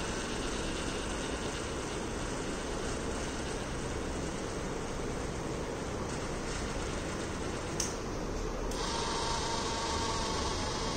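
Small geared DC motor running steadily as it turns the antenna mount, with a sharp click about eight seconds in, after which the hum changes.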